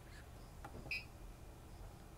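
A single short electronic beep about a second in, from the Ender 3 printer's control-panel buzzer, over a faint low hum.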